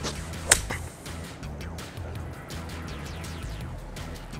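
A golf club striking a ball in a full swing: one sharp crack about half a second in, over background music.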